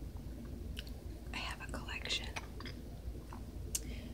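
Soft whispering, with a few small clicks scattered through it.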